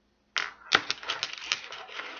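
Happy Atoms molecule-model pieces, atom balls and plastic bond sticks, clicking and clattering rapidly as they are handled and fitted together, starting suddenly about a third of a second in, with one sharp click soon after.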